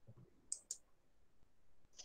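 Two quick computer mouse clicks about a fifth of a second apart, about half a second in, over near silence.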